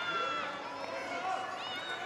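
Faint voices and shouts of spectators over a low outdoor crowd murmur.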